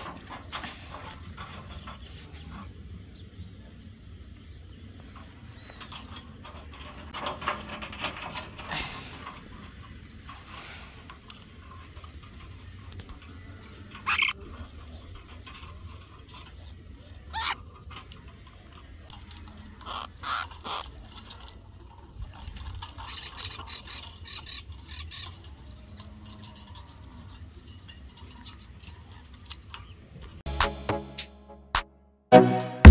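Birds in a wire-mesh trap: a few short, sharp calls and scattered rustles and clicks from movement against the mesh, over a steady low outdoor rumble.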